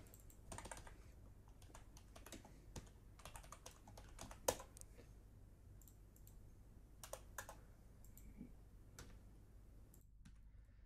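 Faint typing on a computer keyboard: scattered, irregular key clicks, the sharpest about four and a half seconds in, with a few more around seven seconds.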